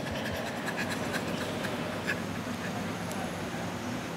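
Faint laughter, soft and scattered, over a steady low background hum.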